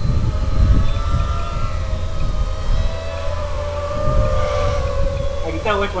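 FPV racing quadcopter's motors and propellers, a steady pitched whine that drifts slowly up and down with throttle, over a low rumble of wind on the microphone.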